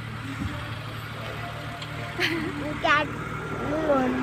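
Steady low vehicle engine hum, with a voice speaking briefly in the second half.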